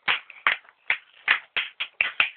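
Hands clapping in a steady rhythm, about six claps at roughly three a second.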